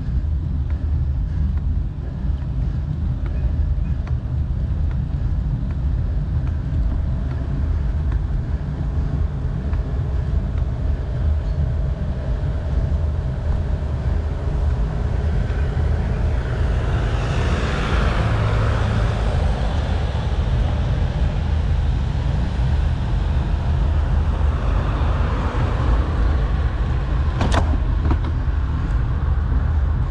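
Steady low rumble of wind and rolling road noise on a moving action camera's microphone, with a brief sharp click near the end.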